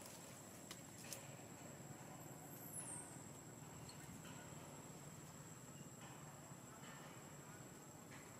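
Near silence: faint outdoor ambience with a steady thin high-pitched whine, two faint clicks in the first second and a brief high falling whistle about three seconds in.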